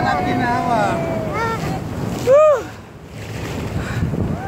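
Wind buffeting the phone's microphone and water rushing past a towed banana boat, with riders' short wordless cries over it; the loudest cry comes about two and a half seconds in.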